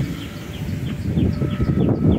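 Small birds chirping: a quick run of short, falling chirps, about four a second, over a low background rumble.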